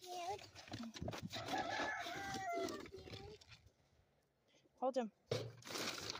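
A rooster crowing once: a short opening note, then a long drawn-out call lasting about two seconds.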